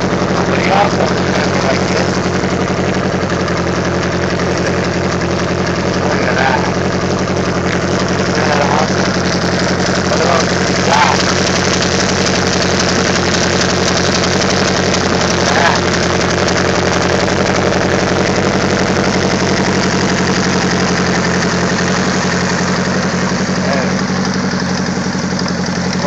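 A 1982 Honda Gold Wing's flat-four engine idling steadily.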